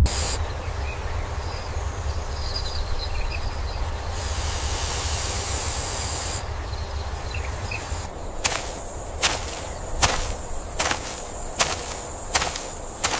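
Outdoor ambience sound effects: a steady low wind-like rumble with a faint hiss. A brighter hiss swells in the middle for about two seconds. From about two-thirds of the way in, sharp snaps come evenly, a little more than one a second.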